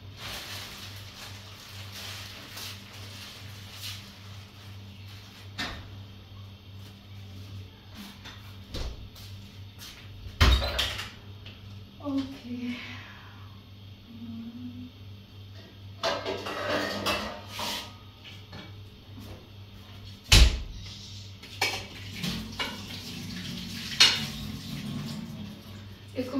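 Kitchen clatter of metal pots, pans and lids being handled and set down, and a cupboard door opened and shut, with a few sharp, loud knocks about ten, twenty and twenty-four seconds in, over a steady low hum.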